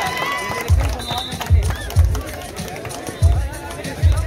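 Music with a heavy bass thump about every half to one second, played over the court's loudspeakers, with voices mixed in.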